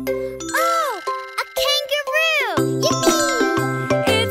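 A cartoon child's voice exclaims "Oh! A kangaroo!" in a lilting, rising-and-falling pitch over a bright children's-song backing with chiming bells. The bass drops out under the line and comes back about two and a half seconds in.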